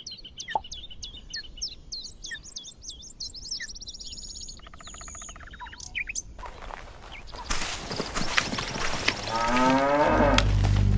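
Woodland birdsong: many short, high chirps and a fast trill, over a faint steady high tone. Past the middle a louder rustling hiss with clicks takes over, and a rising pitched sound comes just before the end.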